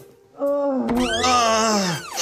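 A person's voice in a long, drawn-out animal-like cry, rough-edged, starting about half a second in and falling in pitch at the end.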